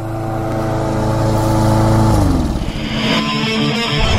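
Program bumper audio: a steady, loud, engine-like sustained tone that slides down in pitch about two seconds in, followed by a rising hiss and guitar-driven rock music starting near the end.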